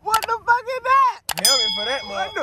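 Subscribe-button animation sound effect: sharp mouse clicks, then a bell ding that rings out over the second half.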